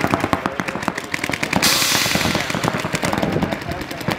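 Paintball markers firing rapid strings of shots, several guns at once, with a brief hiss about a second and a half in.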